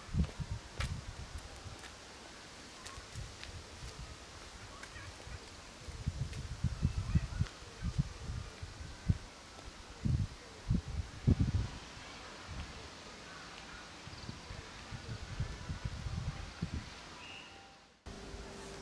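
Wind buffeting the microphone in irregular low rumbling gusts, strongest in the middle, over faint outdoor ambience.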